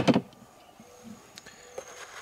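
A single sharp knock, then a few faint light clicks as a hand takes hold of an outboard engine's plastic dipstick handle.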